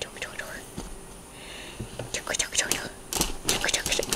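A soft whispered voice with scattered clicks and rustles of handling, the clicks coming thicker in the second half.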